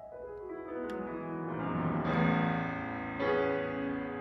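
Grand piano playing a slow passage of sustained notes that build into full chords and swell in loudness, with a new chord struck just after three seconds in.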